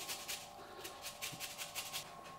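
Orange peel being grated on a fine rasp grater to zest it: a quick run of light, faint scraping strokes.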